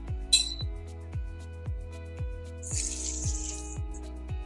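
Hot oil poured from a small saucepan onto raw sliced sambal matah ingredients, hissing for about a second near the end. A short clink comes about half a second in. Background music with a steady beat plays throughout.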